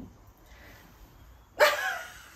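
A woman's sudden loud burst of laughter near the end, after a quiet stretch.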